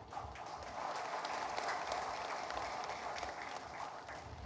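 Audience applauding, swelling over the first second and fading near the end.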